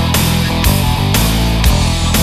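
Instrumental passage of a symphonic hard rock song: electric guitars over drums keeping a steady beat, with a drum hit about every half second.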